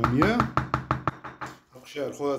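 A person's voice, pitch rising and falling, with a rapid run of about ten sharp knocks at roughly eight a second that stops about a second in.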